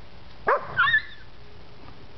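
A puppy giving two short, high-pitched yelps in quick succession about half a second in, the second higher and wavering.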